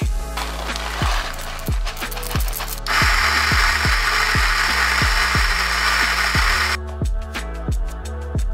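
Moccamaster KM5 coffee grinder with 50 mm flat steel burrs grinding coffee beans; the grinding starts about three seconds in and stops suddenly about four seconds later. Background music with a steady beat plays throughout.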